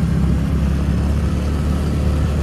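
Steady low drone of a TVS Ntorq scooter being ridden along a street, heard from the rider's seat, with wind rumbling on the phone's microphone.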